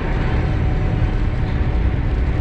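Steady engine and road noise inside a lorry's cab while it drives at motorway speed.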